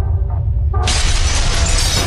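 Intro sound effect: a deep steady rumble under music. Just under a second in it gives way to a sudden loud shattering crash of breaking debris that keeps going.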